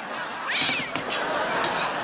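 A domestic cat yowling, one rising cry about half a second in, over a steady rush of background noise.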